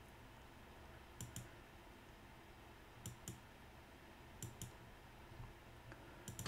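Computer mouse button clicks, each heard as a quick pair, three times about a second and a half apart, over faint room hiss.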